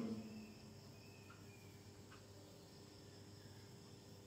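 Near silence: a faint steady room hum, with the tail of a spoken word fading out in the first half second and a couple of faint short high sounds about one and two seconds in.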